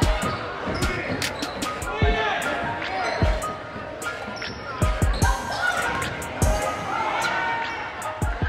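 Indoor basketball game sound: a basketball bouncing on the hardwood court in irregular thuds, with voices calling out across the gym.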